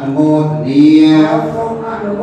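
Khmer Buddhist ceremonial chanting: a slow chant sung on long held notes that glide slightly in pitch.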